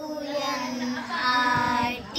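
A group of young children chanting a sing-song classroom rhyme together, their voices growing stronger in the second half.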